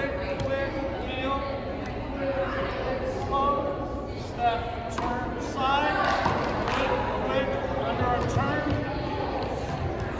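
Indistinct voices talking in a large, echoing gymnasium, with a few short thuds in between.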